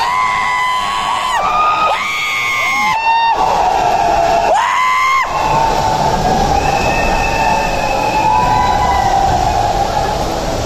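Repeated horn-like blasts over steady crowd noise. There are about five blasts in the first five seconds, each sliding up in pitch, holding about half a second to a second, then sliding down. Fainter held tones come later.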